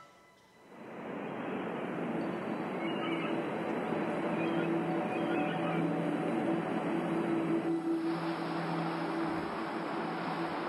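Ocean surf washing onto a beach, fading in after about a second, with soft sustained music tones underneath.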